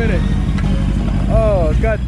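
Motorcycle engine idling with a steady low rumble, and a man's voice calling out briefly near the end.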